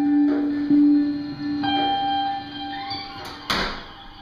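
Sparse, ambient live band improvisation: a low note held and struck again under the first second, with higher sustained notes joining about one and a half seconds in. A short noisy splash sounds near the end.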